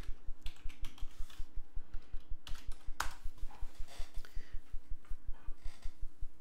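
Typing on a computer keyboard: scattered key clicks as a short chat message is typed, with one sharper key press about three seconds in. Underneath runs a low, regular pulse about five times a second.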